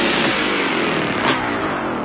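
A dense, noisy broadcast transition effect, a whoosh-like sweep whose treble closes down steadily as it fades out.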